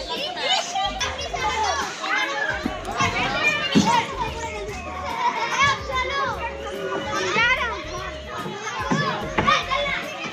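A crowd of children playing and shouting at once, many high voices overlapping and calling out.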